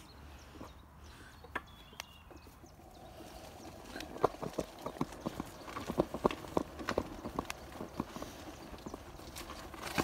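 Footsteps on a stony path, loose stones clicking and knocking underfoot, irregular and several a second, getting going about four seconds in.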